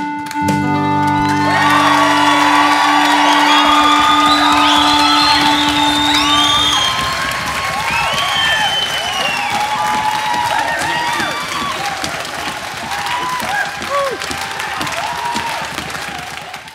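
A live band's closing chord ends with a held melodica note that carries on for several seconds. Audience applause with cheers and whoops rises over it, then slowly dies down.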